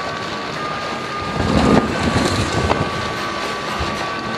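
Fountain water splashing in a concrete bowl, with wind buffeting the microphone and swelling louder about a second and a half in. A few sharp knocks are heard.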